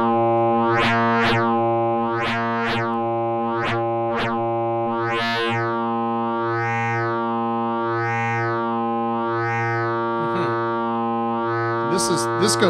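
A single held synthesizer note from a Eurorack patch: the Flamingo harmonic interpolation module feeding the Captain Big O's wave folder. Its bright upper overtones sweep up and down in repeating swells as the folding changes, about twice a second at first and then more slowly, about every second and a half.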